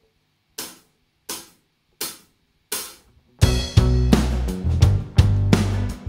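A drummer's count-in of four sharp taps, evenly spaced a little under a second apart, then the full band comes in about three and a half seconds in: drum kit, bass and electric guitars playing together.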